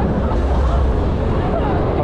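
Steady low rumble of wind and motion on the camera microphone as a Huss Take Off fairground ride turns, with riders' voices faintly mixed in.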